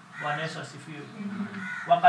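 A man's voice speaking: the preacher continuing his sermon, his words not caught by the transcript.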